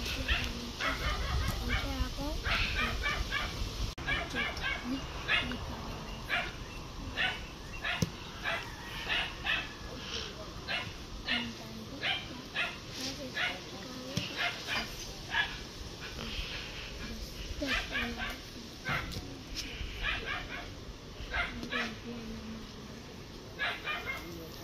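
A dog barking over and over in short, high yaps, about two a second and without pause.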